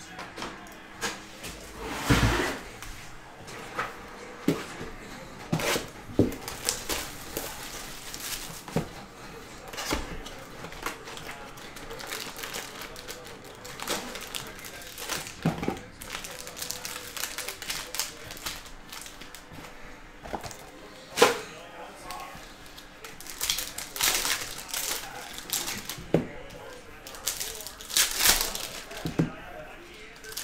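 Trading card packs and cards handled on a table: irregular sharp clicks, taps and crinkles of foil wrappers and card stacks, with louder snaps about two seconds in and again about twenty-one seconds in.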